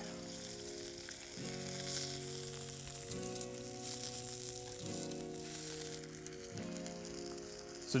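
Bacon and steak sizzling steadily in their own grease on a hot stone slab over a campfire. Soft background music runs under it, its chords changing about every second and a half.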